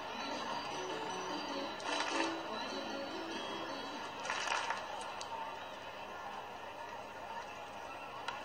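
Faint ballpark music over a low steady crowd hum, heard through a live baseball broadcast between pitches.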